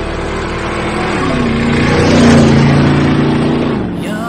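Harley-Davidson motorcycle's V-twin engine revving: its pitch rises about a second in and is loudest past the middle, then holds steady and cuts off abruptly at the end.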